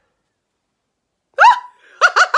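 Dead silence for over a second, then a woman's short, loud, excited exclamation ("look!").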